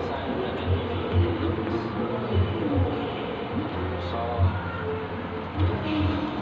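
Indistinct background voices and some music over a steady, noisy hum.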